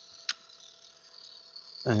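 A single sharp click as a hand handles the arrow-cresting machine, over a faint steady high-pitched hum.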